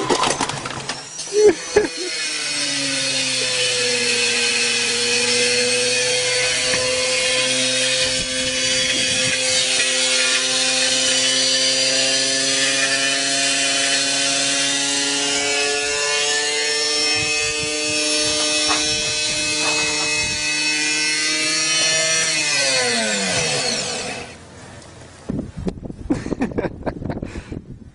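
Washing machine's electric drive motor, torn loose and lying on the ground, running free with a steady whine that creeps slightly up in pitch, then winds down quickly and stops near the end. A couple of knocks come just before the whine starts.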